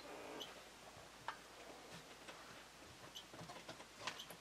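Geiger counters ticking at random: a few faint, irregularly spaced ticks and short high chirps over near silence.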